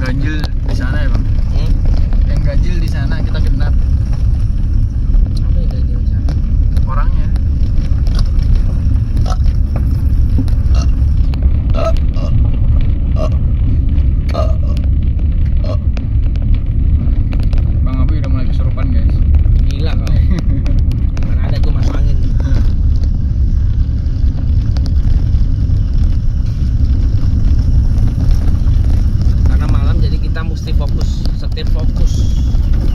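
Car rolling slowly over a bumpy dirt track, a steady low rumble of engine and tyres with occasional knocks from the bumps, and voices now and then over it.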